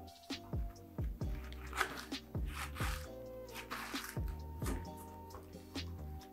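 Background music with a deep, regular beat and sustained notes.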